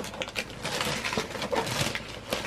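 Christmas wrapping paper being torn and crinkled by hand, a continuous rustling crackle.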